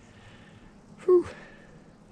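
A man's single short "whew", a breath blown out in relief after hard scrubbing, about a second in, over a faint steady background hiss.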